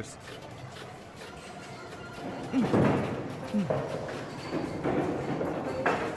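A skee-ball rolling up the lane, a rumble that starts about two and a half seconds in and slowly fades, over faint background voices.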